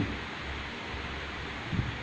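Steady hiss of an electric fan running in the room, mixed with road traffic noise; a brief low sound near the end.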